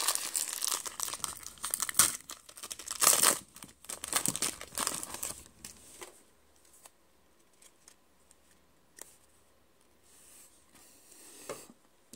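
Foil wrapper of a Panini football card pack being torn open and crinkled by hand, in a series of loud bursts over the first six seconds. After that only a few faint clicks and rustles as the cards are slid out of the pack.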